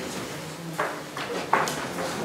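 A few short, sharp knocks and clicks over quiet room tone, the loudest about one and a half seconds in.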